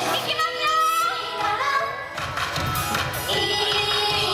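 Japanese idol girl group singing a pop song live into microphones over a backing track through a PA. The beat drops out briefly and comes back in about two seconds in.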